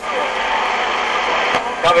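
CB radio receiver hiss and static from a received station's carrier, opening with a click as the station keys up and running steadily for almost two seconds before a voice comes through near the end.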